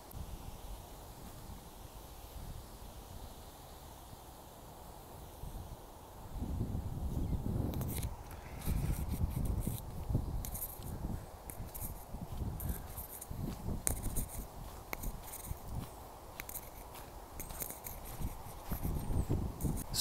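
Walking on a woodland footpath: footsteps with irregular low thumps and rustle of handling noise on the microphone, starting about six seconds in after a quiet stretch, with scattered small clicks.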